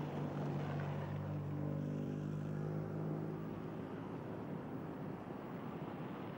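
An engine or machine running with a steady low hum, which fades after about three and a half seconds, leaving a dull background noise.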